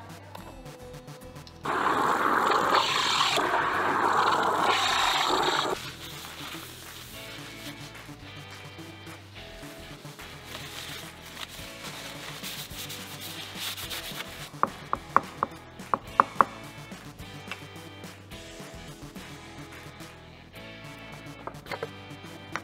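A Beko coffee machine's steam wand frothing milk, a loud hiss that starts just under two seconds in and stops about four seconds later. Several sharp clicks follow near the middle.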